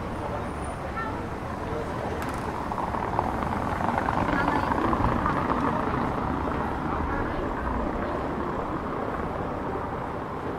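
A car driving slowly over a cobblestone street passes close by, its tyre and engine noise swelling to a peak about five seconds in, over steady town street noise.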